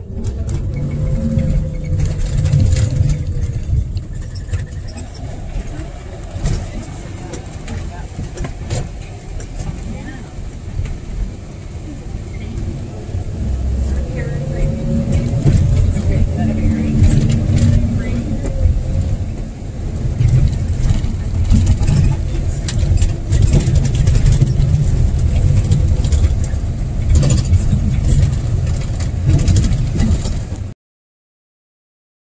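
Engine and running rumble of a moving vehicle heard from on board, with scattered knocks and rattles; the engine note rises and falls a couple of times.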